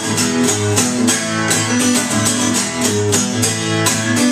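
Acoustic guitar strummed in a steady rhythm, about three to four strums a second, with chords ringing between strokes.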